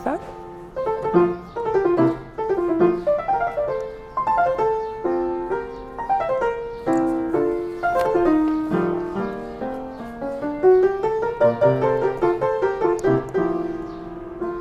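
Upright piano being played: a continuous, flowing melody over lower chords, each note striking and then ringing away.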